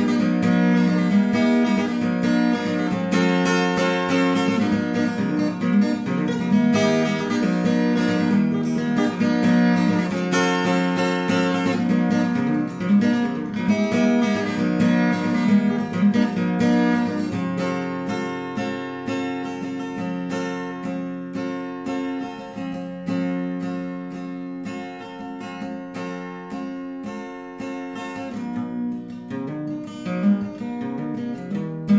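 Epiphone steel-string acoustic guitar played solo, strummed chords for the first half, then about halfway through easing into a quieter, sparser passage of picked notes.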